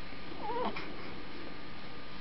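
A baby gives one short, faint coo with a wavering pitch, about half a second in.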